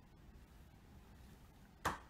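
Quiet room tone, then near the end a single brief, sharp slap of a paper folder being handled.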